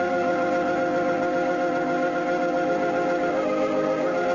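Organ music playing slow, sustained chords, with one change of chord near the end.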